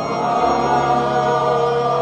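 Church music: voices singing a hymn together over sustained organ chords, the held notes shifting to a new chord shortly after the start.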